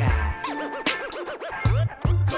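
Turntable scratching over a hip-hop beat: a quick run of rising-and-falling record sweeps about half a second in, over bass and drum hits.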